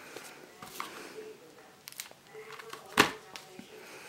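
A cardboard playing card box being handled in the hand: a few faint clicks and taps, with one sharp tap about three seconds in.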